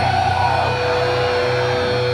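Electric guitar and bass amplifiers droning between songs: a steady held feedback tone over a constant low hum, with no drums.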